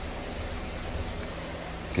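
Steady low hum with a hiss of running water, from the pumping and hose water of an aquarium water change under way.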